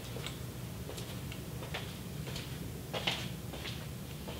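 Quiet room with a steady low hum and a few faint, irregular clicks and ticks.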